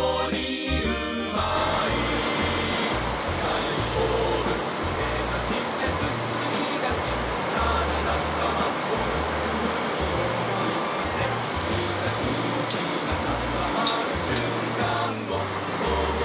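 Breaded beef fillet cutlet deep-frying in hot oil, a steady dense sizzle, under background music with a pulsing bass line.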